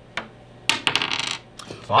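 A plastic die thrown onto a wooden tabletop, clattering and tumbling in a quick run of clicks about two-thirds of a second in and settling a little later, after a single tap near the start.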